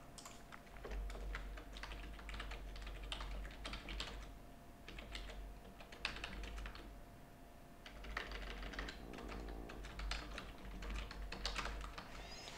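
Typing on a computer keyboard in irregular bursts of rapid keystrokes, with short pauses between runs and a low thud under the keystrokes.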